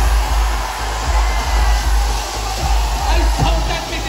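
Stage CO2 cryo jets blasting a steady loud hiss over live hip-hop music with a heavy bass beat.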